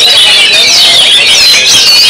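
Oriental magpie-robin (kacer) song with other songbirds overlapping: a loud, continuous tangle of fast, high, warbling whistles and chatter.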